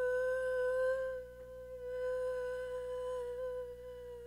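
A woman's voice holding one long, steady "woo" on a single pitch, a little quieter after about a second.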